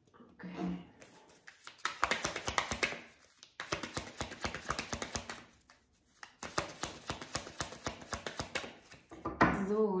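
A deck of Lenormand fortune-telling cards being shuffled by hand: three runs of rapid, dense clicking, with short pauses between them.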